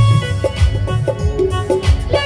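Live band instrumental interlude in a Bollywood song: a keyboard melody over a steady hand-drum beat, several beats a second, with no singing.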